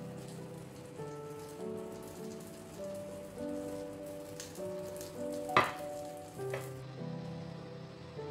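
Piano background music over the faint crackling sizzle of sauce left in a hot frying pan, with one sharp clink about five and a half seconds in and a lighter one just after. Near the end the sizzle drops out, leaving only the piano.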